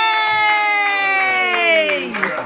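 A long, high-pitched cheer of "yeah" held on one breath, slowly sliding down in pitch and dropping away near the end, with a few scattered claps.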